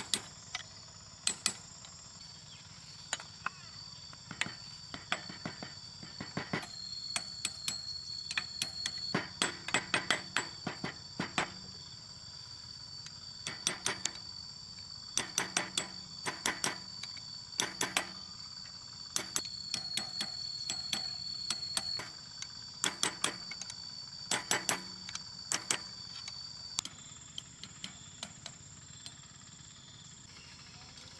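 Clusters of quick, sharp metal taps, several to a burst and repeated every second or two, from a steel hex key worked against a bearing fitted in a tractor wheel hub. Behind them runs a steady, high-pitched insect drone.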